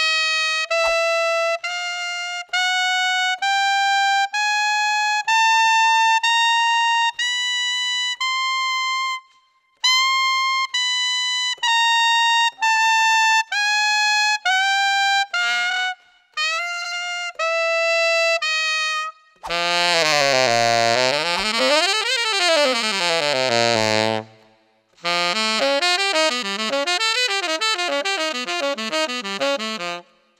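Yanagisawa TW01 tenor saxophone with a Guardala Studio metal mouthpiece playing separate held notes that climb step by step from the top of the normal range up into the altissimo register and then come back down. From about two-thirds through comes a long sweeping run, then a quick passage of fast-moving notes.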